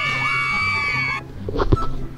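A high, held vocal shriek over music, cut off abruptly about a second in, followed by quieter music.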